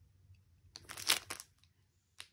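Plastic wrapping of a fabric strip set crinkling as the pack is handled and flipped over, in one short burst about a second in.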